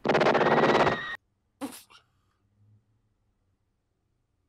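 A burst of rapid gunfire from a film soundtrack lasting about a second, followed by one more short, sharp report.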